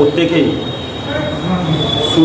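A man speaking, his voice muffled behind a face mask, over a thin steady high-pitched whine.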